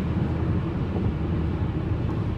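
Steady low rumble of a car on the move, heard inside the cabin: engine and road noise.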